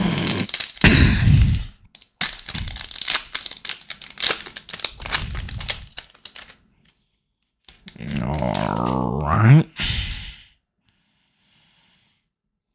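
Crinkling and tearing of a Panini Prestige 2023 football card pack's wrapper as it is torn open, a rapid run of crackles over the first six seconds or so. Near the end comes a short wordless voiced sound, rising in pitch as it ends.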